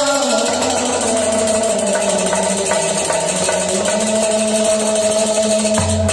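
Harmonium holding long, steady chords with only sparse tumbaknari (Kashmiri clay goblet drum) strokes; the drum comes back in with fuller, rhythmic strokes right at the end.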